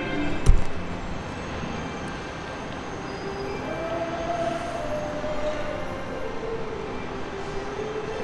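A Walt Disney World monorail train running past with a steady rumble and a whining tone that rises about midway, then falls and settles. A single thump comes about half a second in.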